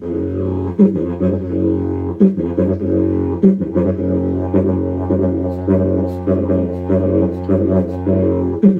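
A 135 cm yidaki (traditional didgeridoo) keyed to F#, with a natural mouthpiece, played as a steady low drone with a stack of overtones and frequent rhythmic accents.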